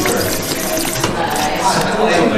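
Water running from a stainless-steel drinking fountain while a man drinks from it.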